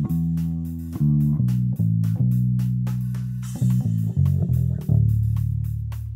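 Background music: a free-form bass guitar line in A, single plucked low notes that ring and fade, the last one held from about five seconds in.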